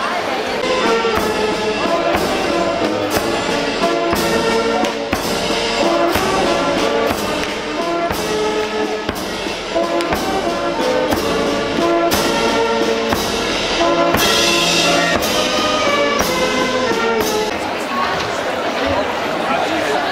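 Brass marching band with tuba, saxophones, bass drum and cymbals playing over a steady drum beat. The music fades out near the end, leaving crowd chatter.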